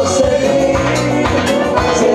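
Live band music with accordion, bass and percussion, loud and steady, amplified through a dance-hall sound system.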